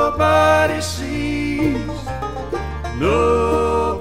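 Bluegrass band playing an instrumental break: a lead line that slides between notes over a bass line that steps from note to note.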